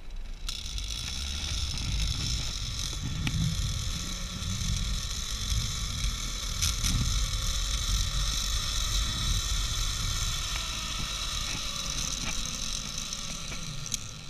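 Zip line trolley's pulley wheels running along the steel cable: a steady, high whirring whine that starts about half a second in and eases off slightly near the end as the ride slows. Wind rumbles on the microphone underneath.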